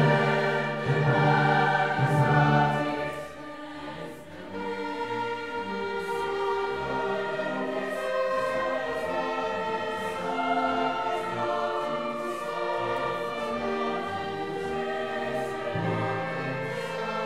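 Large mixed choir singing with a string orchestra: a loud held chord for the first three seconds, then a softer, sustained passage.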